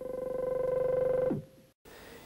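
Buzzing synthetic tone from a drawn-on-film optical soundtrack: it starts abruptly, holds one pitch with a fast flutter of about twenty pulses a second, then drops in pitch and cuts off shortly after.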